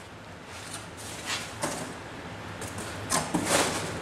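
Cardboard boxes being handled and slid against each other: uneven scraping and rustling of cardboard, loudest about three seconds in.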